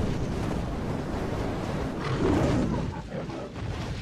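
Cinematic explosion sound effect from a music-video teaser intro: a deep, noisy blast that swells about two seconds in and starts to die away near the end.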